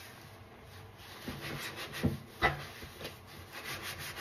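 Old kitchen sponges coated in dry scouring powder being squeezed and rubbed in gloved hands: a dry, scratchy crunching that starts about a second in, with two louder crackles about two seconds in, then softer rubbing strokes.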